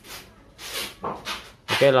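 A few short rustling, scraping swishes from handling the shrink-wrapped cardboard box of a portable speaker, then a man says "Oke" near the end.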